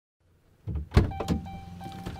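Silence, then about two-thirds of a second in, sounds of a man getting into a pickup truck's driver's seat: two sharp knocks and shuffling over a steady low hum, with a faint steady high tone coming in about a second in.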